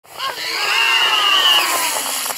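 Zip line trolley whirring along its cable over a rushing hiss, its pitch gliding downward near the end.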